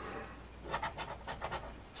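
A coin scraping the latex coating off a lottery scratch ticket in quick, short strokes, about nine a second, through the second half.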